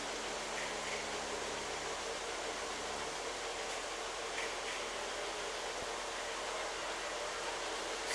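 Several electric toy trains running together on a layout, a steady even whir of motors and wheels on track. A faint low hum drops out about three seconds in.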